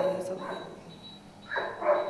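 Only speech: a woman's halting voice in two short bursts, one at the start and one about a second and a half in, with a quieter gap between them.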